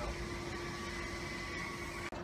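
A steady mechanical hum with a few constant tones over a background hiss.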